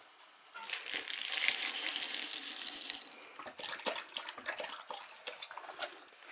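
Dry dog kibble poured into a bowl, a dense rattle that starts about half a second in and lasts about two seconds. After it, a dog lapping water from a stainless steel bowl, in quieter irregular laps and splashes.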